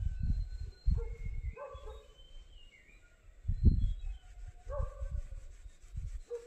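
A dog barking a few short times in an open outdoor setting, with thin high bird chirps in the first half. Low rumbling buffets on the microphone come and go throughout, the loudest a little past halfway.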